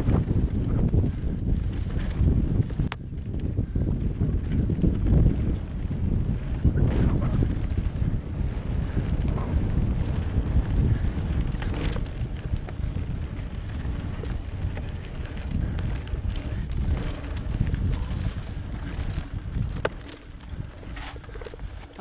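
Wind rushing over a helmet-mounted microphone and mountain bike tyres rolling fast over a dirt trail, with a few sharp knocks and rattles from bumps. It gets quieter in the last two seconds as the bike slows.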